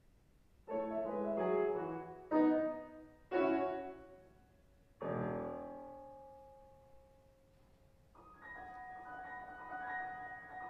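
Solo concert grand piano: four loud chords struck over about four seconds, the last left to ring and fade away. Softer, quickly repeating higher notes begin about eight seconds in.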